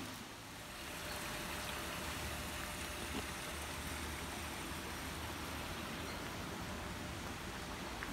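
Steady rush of running water at a small garden pond, rising about a second in and then holding even.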